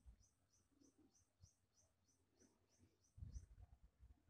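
Near silence, with a faint high chirp repeated evenly about four times a second that stops shortly before a low rumble near the end.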